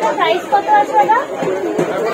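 Chatter of people talking, voices overlapping, with no words clearly picked out.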